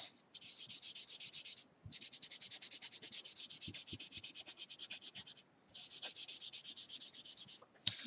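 Soft pastel being rubbed into drawing paper with quick back-and-forth strokes, several strokes a second, in three spells with brief pauses about two seconds in and again about five and a half seconds in.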